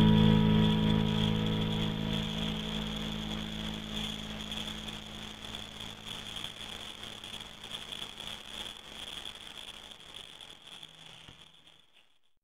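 Distorted electric guitar drone with sustained tones, dying away within the first two seconds and leaving a grainy, flickering noise that fades steadily and drops to silence just before the end.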